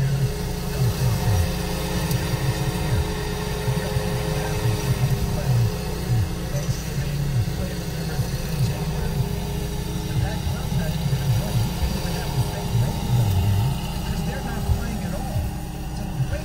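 Muffled talk-radio voices heard inside a car cabin, over the low, steady hum of the car waiting at a stop.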